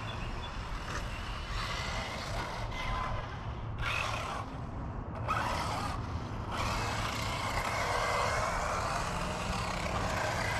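Electric 1/8-scale RC buggy (Kyosho MP9e) running on a dirt track, its motor whine faintly rising and falling as it accelerates and slows, over a steady outdoor rumble and hiss.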